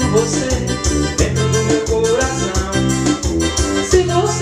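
Instrumental passage of a forró brega song on an electronic keyboard: a sustained keyboard lead melody with a few sliding notes over a steady programmed drum and bass beat.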